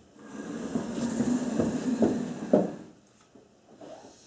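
Upholstered armchair dragged across the floor: a scraping rumble of about three seconds with a few knocks, the loudest near the end as the chair is set down.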